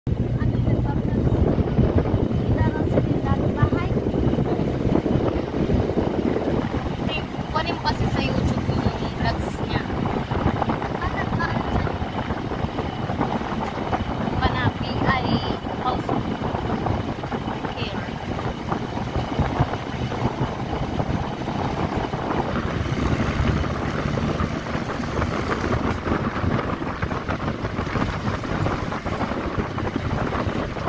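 Engine and road noise of a vehicle driving steadily along a concrete road, with wind buffeting the microphone.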